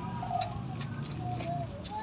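Metal tongs clicking against an aluminium steamer and a plastic bag crinkling as steamed bread is lifted out and bagged, with several short sharp clicks.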